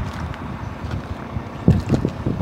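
Wind buffeting the microphone outdoors: an uneven low rumble that comes in gusts, with a few faint clicks.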